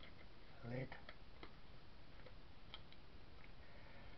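Faint scattered clicks and taps of hands handling small craft items on a work table. A brief wordless sound from a man's voice comes just under a second in.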